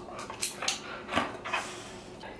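Two dogs moving about on a vinyl kitchen floor: a handful of short clicks and jingles from their claws and collar tags.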